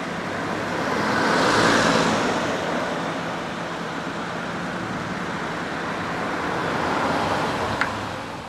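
Steady road traffic noise, swelling as a vehicle passes about two seconds in, with a brief faint high chirp near the end.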